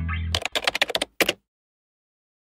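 A sustained low background-music chord cuts off, and a rapid run of sharp typing-like clicks follows for about a second, with a short break before the last few: a sound effect for the logo animation.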